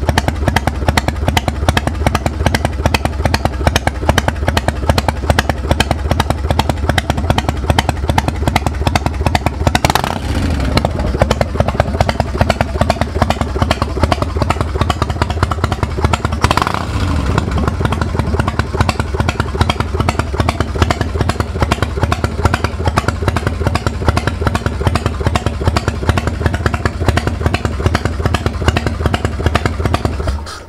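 Harley-Davidson Night Train's Evolution V-twin idling steadily through its chrome dual exhaust, with two short revs about ten and sixteen seconds in. It sounds great: the engine runs well.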